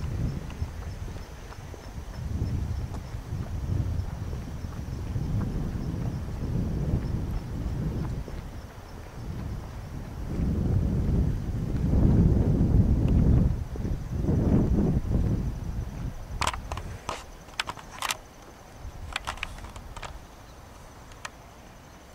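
Wind buffeting a handheld camera's microphone in gusts while someone walks across grass, the rumble swelling and easing. In the last few seconds it drops away, leaving a handful of sharp clicks.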